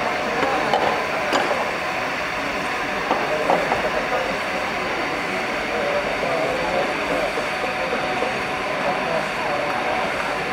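Distant voices calling out, with no clear words, over a steady background noise.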